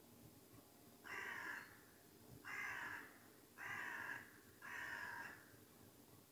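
A crow cawing four times, each caw about half a second long and roughly a second apart.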